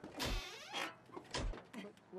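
An old car's sticking door pulled on twice, about a second apart, each time with a heavy thump and a creaking scrape; the door is sticking.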